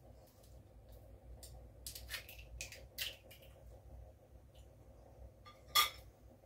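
Faint, scattered clicks and rustles of small items being handled in the hands, then a sharper clack near the end as a spoon is dropped.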